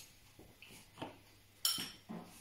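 A metal spoon clinking against a small ceramic bowl of grated pecorino: a couple of light clicks, then a louder brief scrape about a second and a half in.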